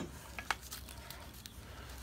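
Faint handling of a small metal tin and the paper-wrapped knife inside it: two light clicks about half a second in, otherwise quiet with a faint low hum.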